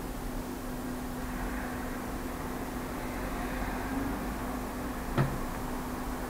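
Steady low background hum with a faint held tone, and one brief short sound about five seconds in.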